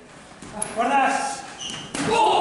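A person's voice, fainter than the commentary around it, with a short sharp click near the end.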